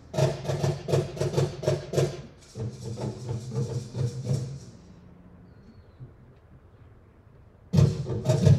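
Percussion trio of cajón, hand drum and maracas playing a fast, steady rhythm. The playing stops about four and a half seconds in for a near-silent break of about three seconds, then comes back in loudly just before the end.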